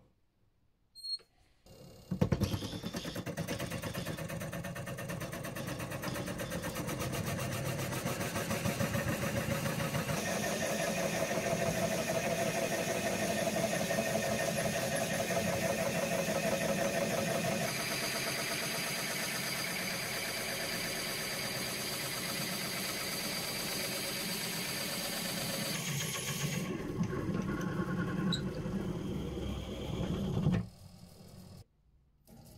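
Wood lathe starting up about two seconds in and running steadily while a Forstner bit in the tailstock drill chuck bores into the spinning willow blank. The tone of the running and cutting changes abruptly three times.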